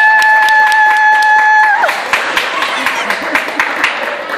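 Hands clapping in a quick, uneven run. Over the clapping, a high voice holds one long steady note that breaks off a little under two seconds in.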